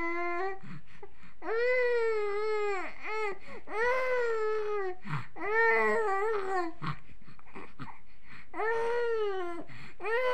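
Young infant fussing and crying in a series of drawn-out wails, each a second or so long with short pauses between, falling quiet for a moment near the end before one more cry.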